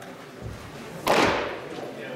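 A single sharp pop about a second in, ringing briefly in a large indoor hall: a baseball smacking into a leather catcher's mitt.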